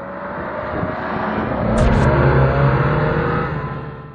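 Acura RDX SUV accelerating past, its engine note and tyre noise growing louder to a peak a little past the middle and then fading away.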